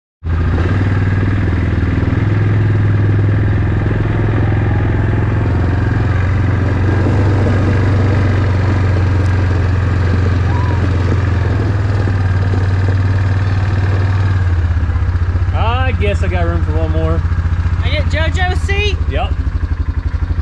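ATV engine running steadily under way as the quad is ridden, a loud low drone. About fourteen seconds in, the drone drops and the engine settles to a lower, pulsing idle.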